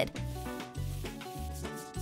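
A paintbrush rubbing paint across a clear plastic lid, a dry rubbing sound, over background electronic music with a steady beat.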